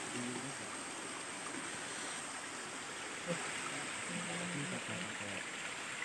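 Small stream flowing: a steady, even rush of water with no breaks.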